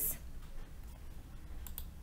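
Two quick computer mouse clicks close together, about one and a half seconds in, over a faint steady low hum.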